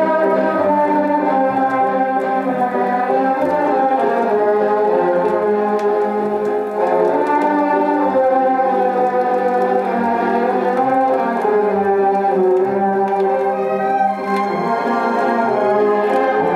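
Orchestral music played from an old gramophone record on a Rigonda valve radiogram and heard through its speaker: held chords under a moving melody, with no singing or speech.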